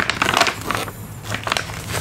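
Plastic jerky pouch crinkling and crackling as both hands grip and work at its top close to the microphone, with a brief lull near the middle.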